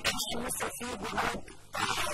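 Speech: a woman talking in Arabic.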